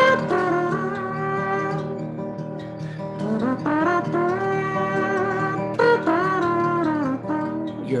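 Mouth trumpet solo, a man imitating a trumpet with his mouth, playing a melody of held notes with bends and slides over strummed acoustic guitar. The line pauses briefly about two seconds in, then comes back with a rising slide.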